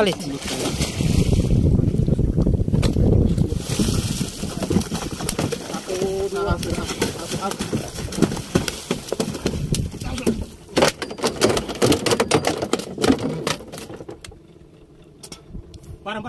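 Water splashing and churning as a speared stingray thrashes at the surface beside a small wooden boat, followed by a run of sharp knocks and thuds as it is hauled over the gunwale and lands in the hull.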